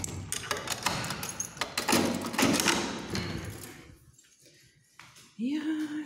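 A wooden flat door being shut and locked: a run of clicks, knocks and a thud, with keys, over the first few seconds. Near the end, a steady sung or hummed tone starts.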